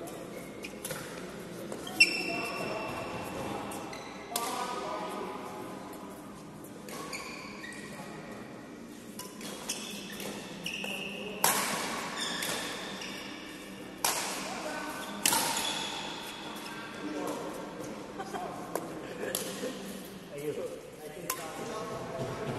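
Badminton rackets striking a shuttlecock during a doubles rally: several sharp smacks at irregular intervals, each echoing briefly in a large hall.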